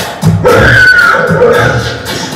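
A horse-like whinny about half a second in, lasting under a second, over a steady music beat from the play's soundtrack.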